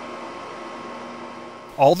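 A steady hum made of several fixed tones, with no knocks or changes in speed, until a man's voice begins near the end.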